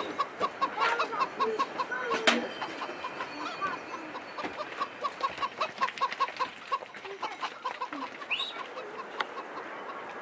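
Chickens clucking in a steady run of short notes, a few each second, with scattered sharp clicks and knocks; the loudest click comes a little over two seconds in.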